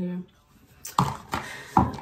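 Two short, sharp knocks about three-quarters of a second apart, from an object being handled on a hard surface.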